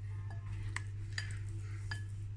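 A spoon clinking against a glass bowl as it scoops cooked tapioca pearls, three short ringing clinks over about a second, over a steady low hum.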